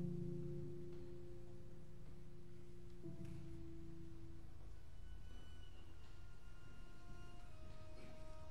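Piano trio (violin, cello and piano) playing very softly in long held notes. A low sustained note fades out a little after four seconds in, while higher held notes enter from about the middle.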